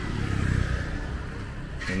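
A road vehicle passing on the street, its low engine rumble swelling about half a second in and then easing.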